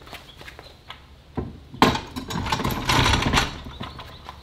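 Kuat Piston Pro X hitch bike rack being pushed into a 2-inch trailer hitch receiver: a thud, then a sharp metal clunk about two seconds in, followed by a second or so of metal scraping and rattling as the bar slides home.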